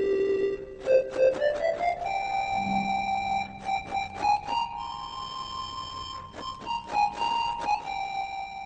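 iPhone ocarina app played by blowing into the phone's microphone, giving a pure, flute-like tone. A held note is followed about a second in by a quick run of rising notes, then a slow melody of longer held notes.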